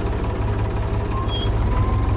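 An engine idling: a steady, evenly pulsing low rumble.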